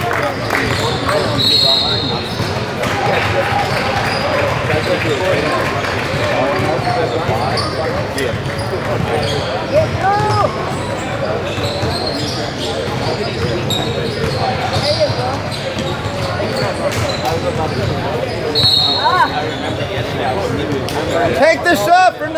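Ambience of a basketball game in a large gym: a basketball bouncing on the hardwood court and a few sneaker squeaks under steady chatter from spectators and players, with short high tones about a second in and again near the end.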